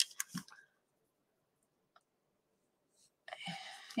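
Mostly silence, broken by a few faint clicks in the first half-second and one tiny tick about two seconds in; a soft voice sound begins near the end.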